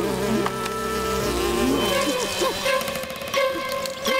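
Hummingbird wings humming in a steady buzz, with short rising and falling tones over it.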